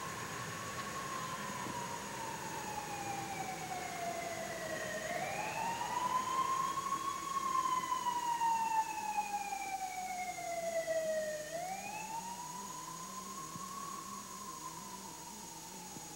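Police siren wailing slowly: its pitch rises quickly, then slides down over several seconds, and this happens twice.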